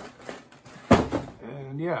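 A new shoe being lifted out of a cardboard shoebox and its paper wrapping: paper and cardboard rustling, with one sharp knock about a second in.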